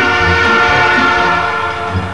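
A train horn sounding one long held note that starts abruptly and fades out over about two seconds.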